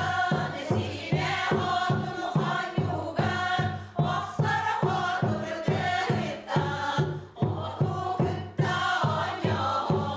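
A women's choir singing together over a steady, regular drumbeat.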